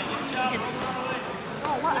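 Voices talking over the general chatter of a busy gym hall. Someone close by starts to speak near the end.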